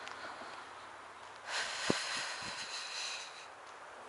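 A person breathing out hard close to the microphone: a breathy rush of about two seconds, starting about a second and a half in, with a few soft thumps during it.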